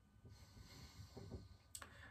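Near silence: a faint breath out through the nose, and a small click near the end.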